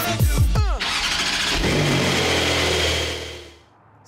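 Music ends with a falling sweep, then a car engine starts up and runs, fading out about three and a half seconds in.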